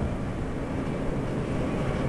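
Steady background noise of the recording room, a low hum with an even hiss over it, with no other event.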